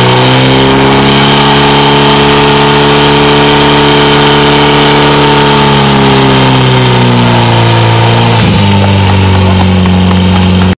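Portable fire pump engine running loud at high revs. Its pitch then slides down and drops abruptly to a lower, steady idle about eight and a half seconds in, as the pump is throttled back once the run is over.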